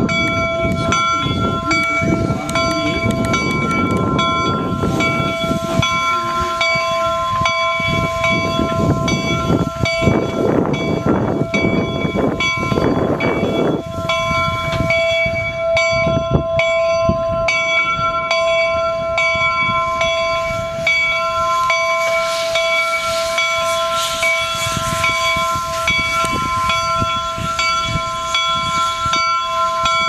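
Replica Union Pacific No. 119 steam locomotive's bell rung over and over in a steady rhythm. Under it, for roughly the first half, the engine's exhaust chuffs and steam hisses as it moves, then fades back.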